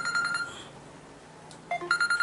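An electronic ringtone: a high fluttering tone held for about a second, which stops about half a second in, then two quick rising notes near the end start the same ring again.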